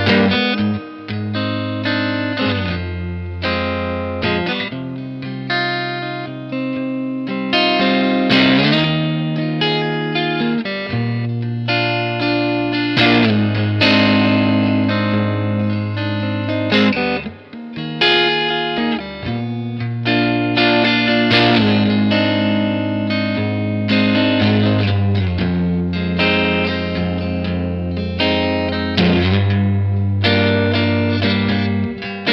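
Duesenberg Paloma electric guitar played through an amplifier: strummed chords and picked notes left to ring, with a fresh attack every second or two and two brief gaps, about a second in and near the middle.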